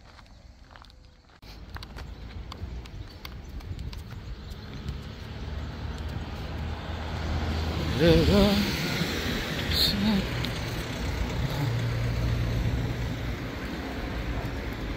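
Faint footsteps on a gravel path, then from about a second and a half in, steady road traffic noise of cars on a main road. A child's voice calls out briefly, at about eight and again at ten seconds.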